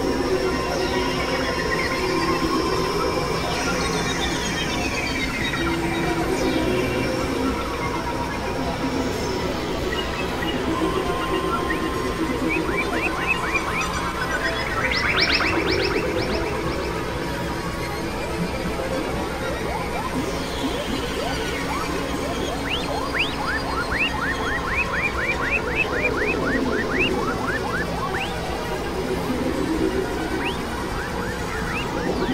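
Experimental electronic drone music from synthesizers (a Novation Supernova II and a Korg microKORG XL): a dense, noisy bed of sustained tones and slow sweeps. Runs of quick rising chirps come in the middle and again toward the end.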